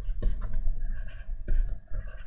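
Stylus tapping and scratching on a pen tablet during handwriting, with a few sharp clicks, the strongest about a quarter second, half a second and a second and a half in.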